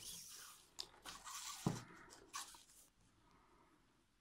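Faint rustling and scraping of hands handling cut yarn strands and a soft tape measure on a tabletop, with a soft thump about one and a half seconds in. It dies away to near silence after about three seconds.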